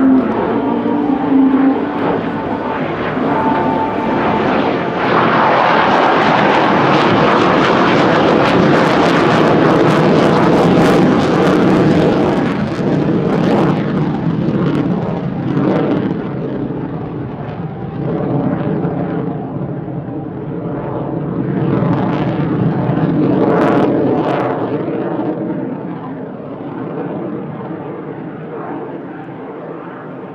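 F-15 Eagle fighter's twin turbofan engines heard through a display pass: a loud jet rush that builds over the first few seconds and is loudest through the middle. It then fades, swells briefly again about three-quarters of the way in, and tails off.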